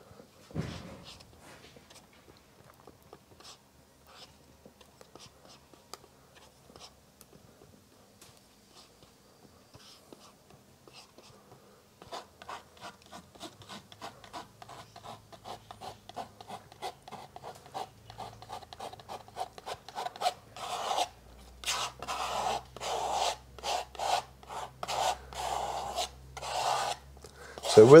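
A steel palette knife scraping thin oil paint across a canvas panel in quick repeated strokes that grow louder and closer together over the second half. Before that there are only faint scattered taps of the knife working paint on a paper palette.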